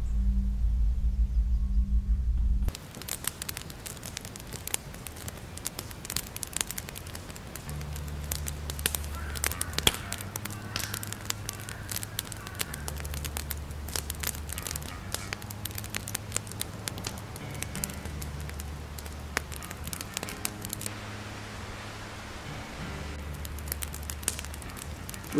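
Wood campfire crackling, with many sharp pops, over a low sustained musical drone that swells and fades in long stretches. A loud low hum at the start cuts off about three seconds in.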